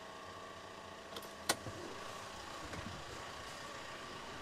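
Volkswagen Crafter van's diesel engine idling steadily, held running by an aftermarket run lock system, with a single sharp click about one and a half seconds in.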